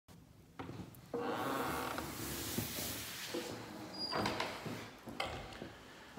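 An apartment door being opened: a long scraping, rubbing noise lasting a few seconds, with several sharp clicks and knocks of the door hardware.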